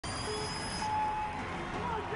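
A single steady electronic tone lasting about half a second, about a second in, over a steady background of arena noise: the start signal of a timed obstacle race as the clock begins.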